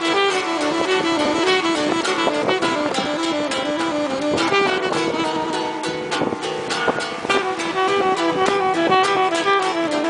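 Saxophone playing a melody over a strummed acoustic guitar, an instrumental passage with no singing.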